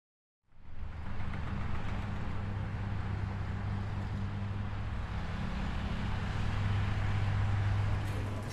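City traffic ambience: a steady rumble of street noise with a low hum underneath, starting about half a second in after a moment of dead silence.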